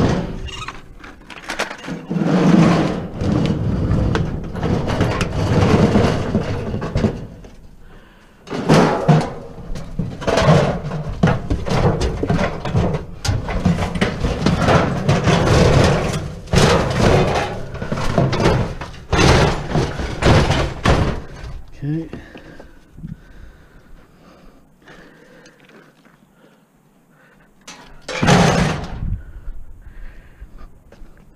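Clattering, thumps and scraping of a metal barbecue grill and other scrap being handled and slid into the back of a minivan, in loud irregular bursts that ease off after about twenty seconds, with one more short burst of handling near the end.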